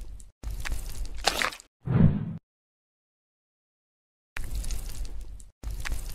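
Sound effects for tweezers pulling a maggot out of a wound: two noisy stretches followed by a short, louder, deeper thump about two seconds in. After a silence, the same sequence begins again near the end.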